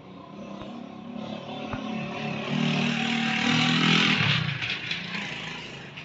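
A motor vehicle passes by. Its engine grows louder over a couple of seconds, peaks about halfway through, then fades away with its pitch dropping as it goes past.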